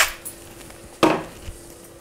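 A single light knock from a small salt container handled over a mixing bowl, about a second in, followed by a fainter tick, over a faint steady hum.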